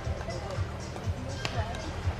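Faint, distant people's voices with irregular low thumps, under soft background music.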